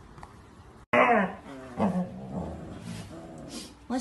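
Adult husky making long, grumbling vocalizations whose pitch bends up and down, starting suddenly about a second in.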